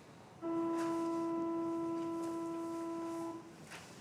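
A single steady pitched tone with a few overtones, held for about three seconds and then cut off.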